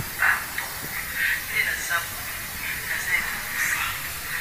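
Breathy, hushed speech from a woman over a steady background hiss.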